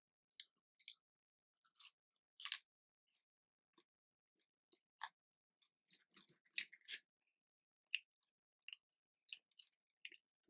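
Faint chewing and crunching of fried chicken, heard as short scattered crackles, the loudest a little over two seconds in and again around six to seven seconds in.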